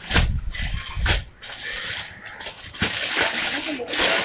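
Clothes being handled close to the microphone: a couple of knocks with a dull thud in the first second, then rustling of fabric and packaging toward the end.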